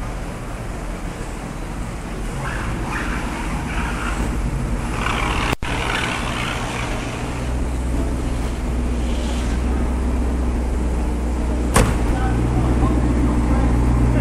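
1982 Corvette's 350 Crossfire Injection V8 idling with a steady low drone that grows louder about halfway through, and a single sharp knock near the end.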